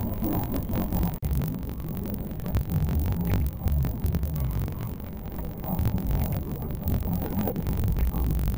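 Muffled, low rumbling ambience of an outdoor crowd and street, uneven and throbbing, with a brief drop-out about a second in.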